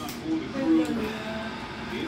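Quiet background talk from people in the room, with no distinct non-speech sound.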